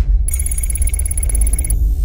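Channel logo sound effect: a deep, steady electronic rumble, with a high, bell-like electronic ringing tone starting about a quarter second in and cutting off near the end.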